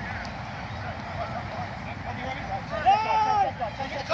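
Players' voices calling out across an open playing field, with one clear drawn-out shout about three seconds in, over steady outdoor background noise.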